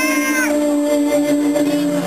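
A woman singing a long held note into a microphone, amplified through a PA, with steady keyboard accompaniment underneath.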